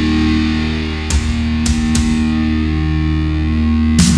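Epic doom metal recording: heavily distorted electric guitar and bass holding a long sustained chord, with a few scattered drum and cymbal hits. The drums come in fully right at the end.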